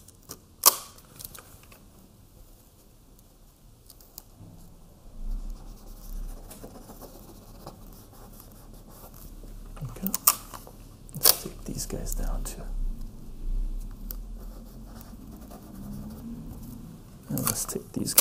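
Clear adhesive tape being pulled off its roll and torn, in a few short sharp rips (about a second in, twice around the middle, and again near the end), with quieter handling rustle between.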